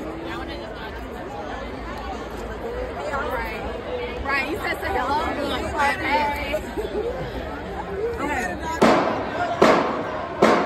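Crowd chatter, with several people talking and laughing at once. Near the end come two sharp, loud strikes about a second apart, the first hits of a marching band's drums.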